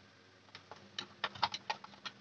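A quick run of light clicks and taps, about a dozen in the last second and a half, from hands working antenna cables loose inside a plastic router enclosure.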